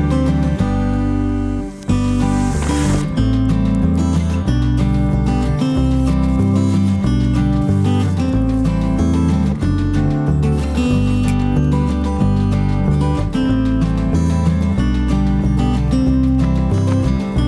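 Background music with acoustic guitar, playing at a steady level.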